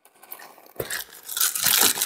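Plastic mailing bag crinkling and rustling as it is pulled at and cut open. It is quiet at first, and the rustle builds from about a second in.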